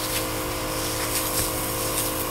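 A small motor or engine running steadily: an even hum with several held tones and a few faint ticks.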